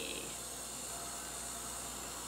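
Handheld craft heat tool blowing hot air with a steady hiss, drying freshly stenciled acrylic paint on fabric until it is just tacky.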